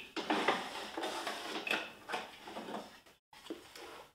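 Small wooden drawer of an old sewing-machine cabinet being slid out and handled: wood scraping and knocking, busiest in the first three seconds, then quieter.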